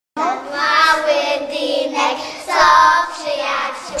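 A group of young children singing together in a few phrases of long held notes.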